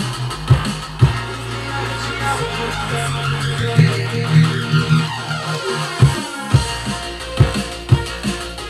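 Electronic dance music mixed live on DJ decks. A steady kick drum, about two beats a second, drops out about a second in under a held synth bass. The low end cuts out suddenly around six seconds, and the kick returns soon after.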